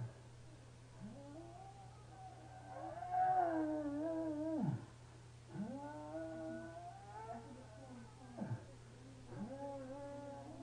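Long, drawn-out moans of pain from a man who has been shot, each cry wavering in pitch and dropping away at its end. There are four cries, and the loudest runs from about three to nearly five seconds in.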